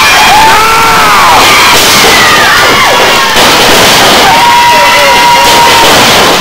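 Small crowd of spectators cheering and shouting, very loud on the camera microphone, with one voice holding a long steady yell through the middle.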